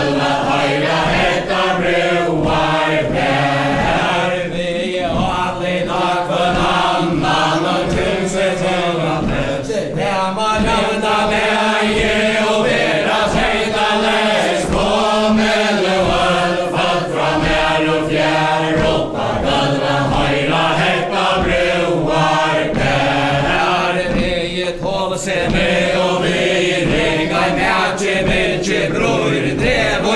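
A large group of men and women singing a Faroese ballad together without instruments, in the chain dance. The dancers' feet stamp in a steady rhythm under the song.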